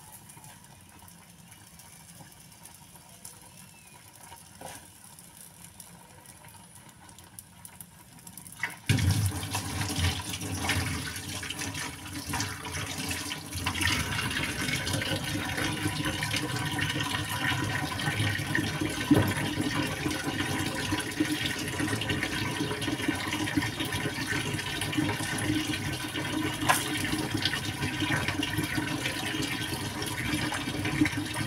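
Water running in a steady stream, starting suddenly about nine seconds in after a quiet stretch with only faint small clicks.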